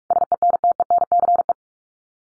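Morse code beep tone at 45 words per minute repeating the word "sentence": a single steady mid-pitched tone keyed on and off in a quick run of short and long beeps, lasting about a second and a half.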